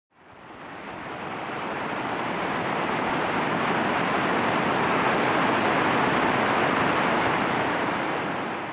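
Water rushing down a small rocky cascade in a stream, a steady rush that fades in over the first couple of seconds and eases slightly near the end.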